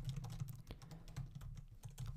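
Typing on a computer keyboard: a quick, irregular run of faint keystrokes as about a dozen characters are entered.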